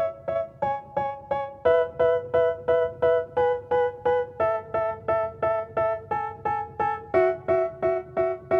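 Outro music on a keyboard: short chords struck evenly, about three and a half a second, the chord changing every second or two.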